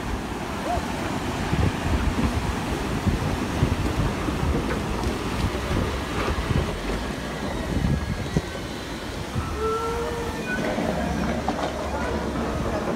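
Ocean surf breaking on a rocky shore, a steady rushing noise, with gusts of wind rumbling on the microphone.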